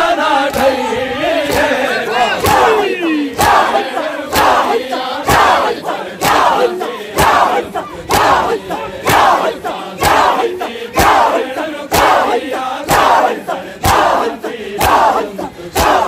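A crowd of men performing matam, striking their bare chests together in unison about once a second, each slap followed by a shouted chant from many voices. A lead reciter's voice sings in the first few seconds before the beating takes over.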